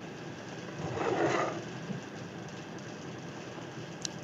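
Steady hiss from an open live-stream microphone line, with a brief louder burst of noise about a second in.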